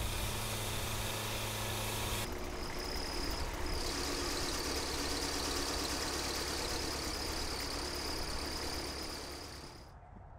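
Portable band sawmill running, its engine and blade sounding together as it cuts a timber. The sound changes about two seconds in, a thin high whine comes in a little later, and it all fades out near the end.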